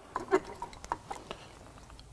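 A few light clicks and taps of plastic valve parts being handled as the Hansen Max-Flo trough valve's diaphragm is refitted, with faint voices in the background.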